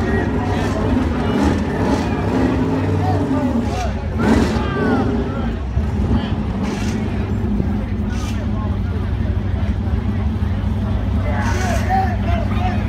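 A vehicle engine runs steadily at a low pitch, with people's voices and shouting over it.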